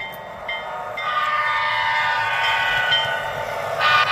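Sound-equipped model diesel locomotives with an air-horn sound: a short toot, then a long steady multi-tone blast. Near the end a louder running sound swells as the locomotives come out of the tunnel.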